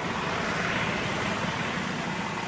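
Steady roadside traffic noise, an even hum with no distinct passing vehicle or horn.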